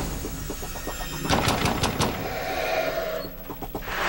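Trailer sound effects: a run of sharp percussive hits over a low hum, with a short held tone between them and a dip in level just before the end.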